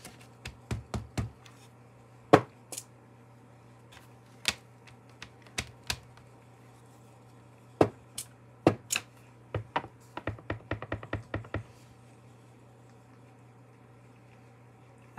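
Scattered clicks and knocks of a clear acrylic stamp block and craft supplies handled on a desk, then a quick run of light taps, about seven or eight a second for two seconds, as the stamp is tapped onto the ink pad to ink it. A faint steady low hum lies underneath.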